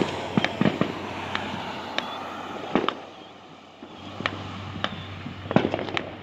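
Fireworks and firecrackers going off out of view: about fifteen sharp bangs and pops at irregular intervals, some in quick clusters, with a quieter spell in the middle.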